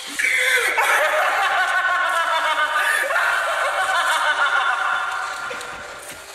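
A long, high-pitched laugh that starts suddenly and fades out near the end.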